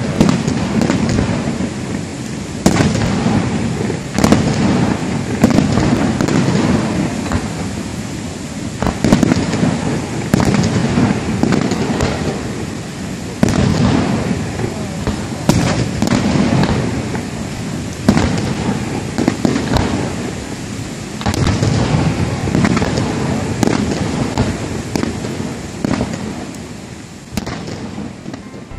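Aerial fireworks shells bursting: a run of sharp bangs, roughly one every second or two, over a continuous low rumble, fading out near the end.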